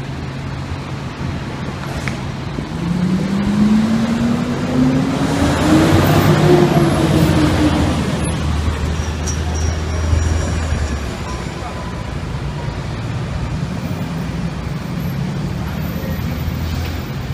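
A fire truck's diesel engine accelerating past at close range in street traffic, its pitch rising for several seconds and loudest about six seconds in, then easing into a low rumble as it moves off.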